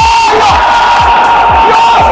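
A man's long, loud shout held on one pitch for about two seconds, over stadium crowd noise and background music with a steady beat.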